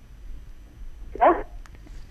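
One short word ("kya?") from a caller, heard through a telephone line about a second in, thin and cut off in the highs; otherwise low background hum.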